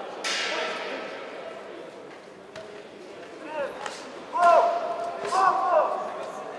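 A ring bell strikes once, about a quarter second in, and rings out over about a second, the signal for the round to start. In the second half, loud shouts from the corners or the crowd follow.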